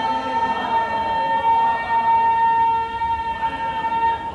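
Voices in a congregation holding one long chanted note in unison over the hall's loudspeakers, steady in pitch, breaking off at the end.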